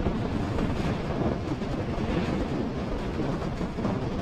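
Steady rushing wind and road noise from a Kymco KRV scooter cruising at about 109 km/h, with no clear engine note standing out.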